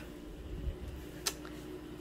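A single sharp click of a light switch being flipped off, about a second in, over a faint steady hum and low rumble.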